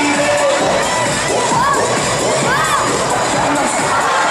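A group of children shouting and cheering together, with many overlapping high yells that rise and fall in pitch.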